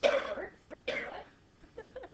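A person clearing their throat twice: two short, harsh bursts about a second apart, the first the louder.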